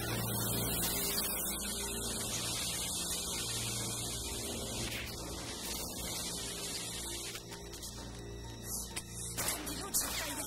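Tense action-film score music over a steady low hum and the hiss of a VHS tape copy, with a sharp hit near the end.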